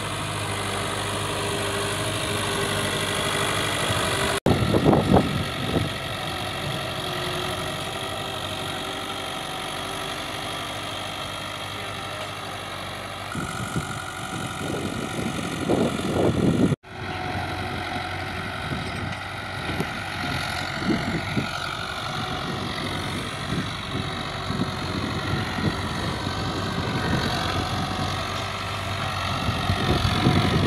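Diesel engine of a 640 tractor running steadily under load as it pulls a tillage implement across the field. Wind buffets the microphone a few times.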